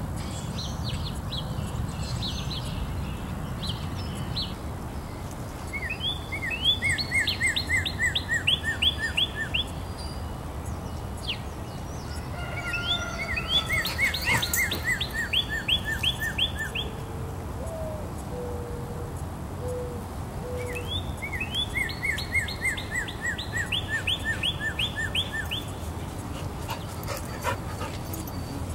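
A songbird singing three bouts of a quick run of repeated notes, each about three seconds long, with a few fainter low whistles in between, over a steady low outdoor rumble.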